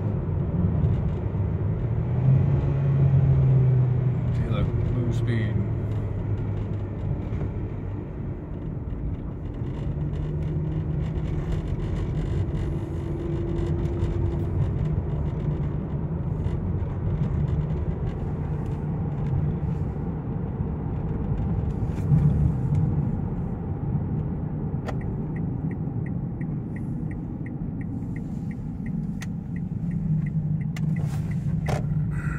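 Car engine and road noise heard from inside the cabin while driving, a steady low rumble whose engine pitch shifts up and down in the first few seconds and again later. From about 25 seconds in, a fast, even ticking joins it, roughly two to three ticks a second.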